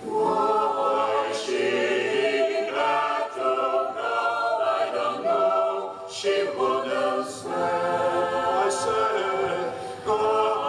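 Mixed choir of women's and men's voices singing a cappella in several parts, with brief breaks between phrases about three and six seconds in.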